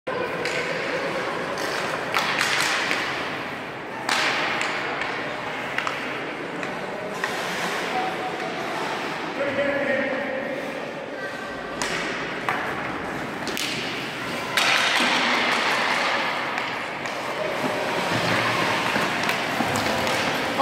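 Hockey rink sounds echoing in a large arena: a steady hiss of skates on ice, with scattered sharp knocks of sticks and pucks, some louder ones near the middle.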